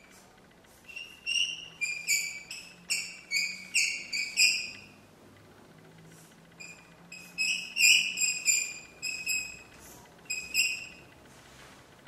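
Chalk squeaking on a blackboard in short, high strokes as words are written: two runs of squeaks with a short pause between them, one run for each word.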